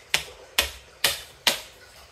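A plastic game piece tapped space by space along a cardboard game board, four sharp taps about half a second apart, as a move is counted out.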